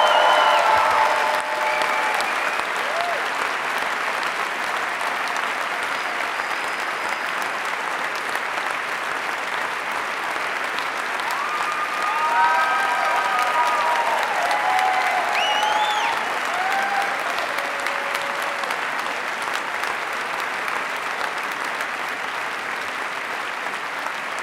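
A large theatre audience applauding steadily, an ovation, with scattered cheers and a whistle around the middle.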